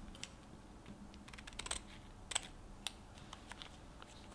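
Small foil-and-plastic sachet of squid ink crinkling and clicking as it is picked up and handled, a scatter of soft crackles with one sharper click a little past halfway.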